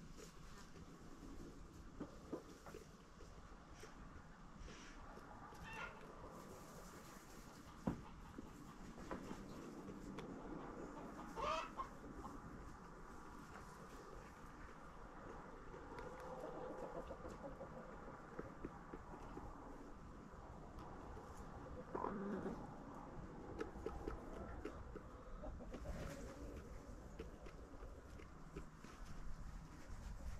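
Backyard hens clucking softly now and then while pecking at a carved pumpkin, with a sharp tap about eight seconds in and a louder rising call a few seconds later.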